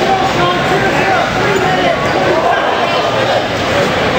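Overlapping, indistinct voices of many people talking and calling out at once in a large hall, with no single clear speaker.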